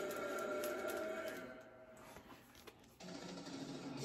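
Quiet room tone with faint handling noise as a vinyl LP in its sleeve is picked up from a stack. There are a few soft ticks in the middle, and a little more rustle near the end.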